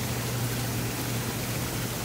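Hot tub jets and pump running: a steady rush of churning, bubbling water with a steady low hum under it.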